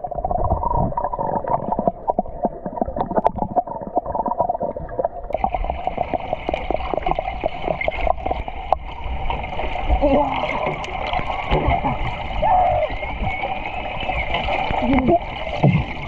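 Underwater sound in a swimming pool heard through a submerged camera: dull, muffled gurgling and bubbling with many small clicks and knocks as people move and hold their breath below the surface. A few brief muffled voice-like glides come through in the second half.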